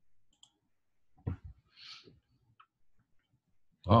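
Soft clicks and a short, dull knock about a second in, handled close to a computer microphone during a pause; a voice starts just at the end.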